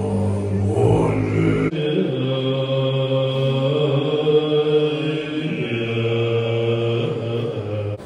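Assembly of Tibetan Buddhist monks chanting in unison, long held low tones in a large reverberant hall. About two seconds in the chanting changes abruptly to another stretch of chant.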